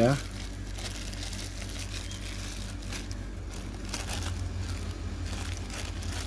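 A clear plastic bag crinkling and rustling in irregular crackles as it is pulled off a diecast model airliner by hand.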